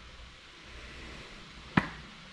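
Low, steady hiss of background room noise, with one short, sharp click near the end.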